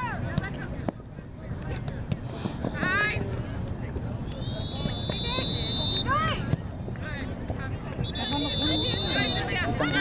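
Outdoor sideline sound at a youth girls' soccer match: a few short, high-pitched shouted calls from players and spectators, about three seconds apart, over general background noise.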